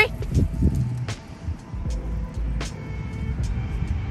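Low, steady rumble of city street traffic under light background music, with a few faint clicks.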